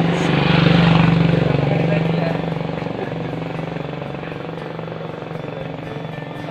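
A motorcycle engine passing close by: a steady drone, loudest about a second in, then fading away gradually as it goes.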